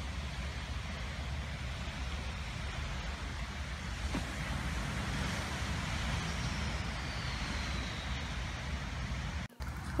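Steady rushing outdoor noise of wind on the microphone and surf, with a deep rumble underneath. It cuts off suddenly near the end.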